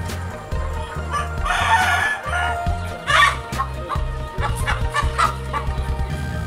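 A flock of native deshi chickens clucking and calling, with a longer call about a second and a half in and a string of short clucks after three seconds. Background music with a steady bass line plays underneath.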